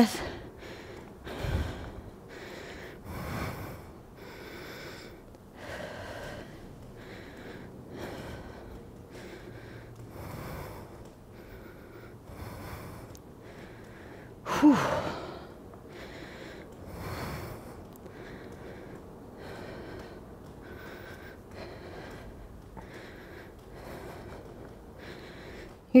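A woman breathing hard and deeply, one breath about every two seconds, as she recovers from a high-intensity interval while still pedalling.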